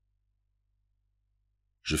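Near silence, a pause in an audiobook narration; the narrator's voice starts speaking again near the end.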